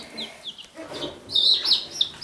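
Several baby chicks peeping: short, high-pitched cheeps that each slide downward. They come in a run that grows louder and busier about one and a half seconds in.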